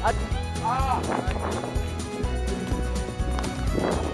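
Background music with a steady low beat, with a brief voice about a second in.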